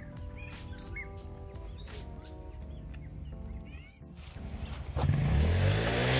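Birds chirping faintly, then about five seconds in a motor vehicle's engine comes in loud, its pitch rising as it approaches.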